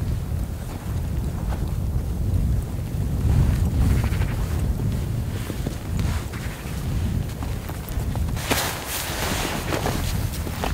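Wind buffeting the microphone, a low rumble that swells about three to four seconds in, with footsteps crunching through snow, the crunching densest near the end.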